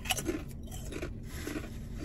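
A crisp chip bitten with a sharp crunch at the start, then chewed with the mouth closed, softer crunches coming about twice a second.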